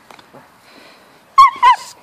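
Two sharp, high-pitched yips from a small dog, loud and close together, about a second and a half in.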